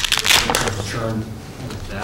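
A man's voice talking in a small meeting room, with a brief rustle like handled paper in the first half-second.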